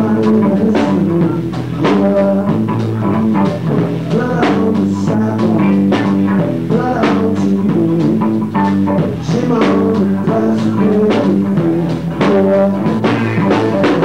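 A live band playing a blues-rock number: guitar over a drum kit, with regular drum and cymbal hits keeping a steady beat.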